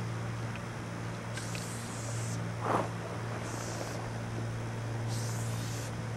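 Spray-paint can hissing in three bursts of about a second each, over a steady low hum, with one short louder sound a little before the middle.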